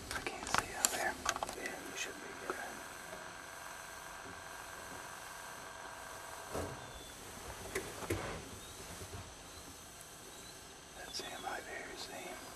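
Hushed whispering between hunters, with a few sharp handling clicks near the start and a faint steady tone that stops about halfway.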